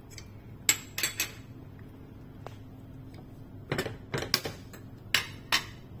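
Stainless steel ladle knocking and scraping against a stainless steel cooking pot: a series of sharp metallic clinks in three bunches.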